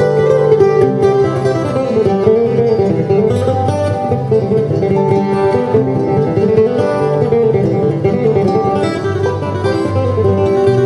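Steel-string acoustic guitar played solo, a picked instrumental tune with a moving melody line over lower bass notes.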